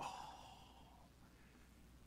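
A man's breathy, sighing "oh" that starts suddenly and fades away over about a second.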